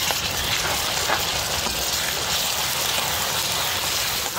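Ginger-garlic paste and fried onions sizzling in hot oil: a steady, loud hiss that starts suddenly at the beginning and holds level.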